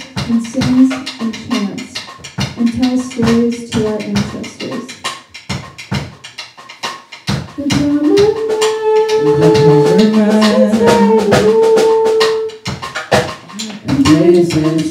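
Live music from a small ensemble, with a busy run of percussive hits all through. From about eight seconds in, several long held notes sound together for a few seconds.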